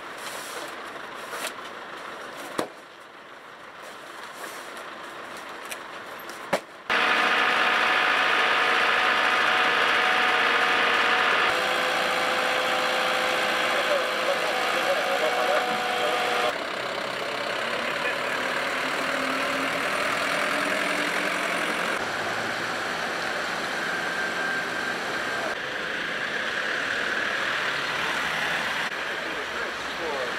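A truck engine idling with a steady hum, amid outdoor yard noise and faint voices. The background changes abruptly several times, louder from about seven seconds in.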